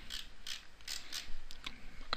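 Computer mouse scroll wheel clicking through its notches: a quick, uneven run of soft clicks.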